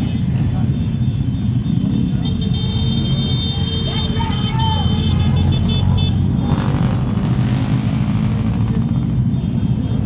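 Many motorcycle and scooter engines running together in a slow, tightly packed convoy, a steady low rumble. A high steady tone sounds for a few seconds midway.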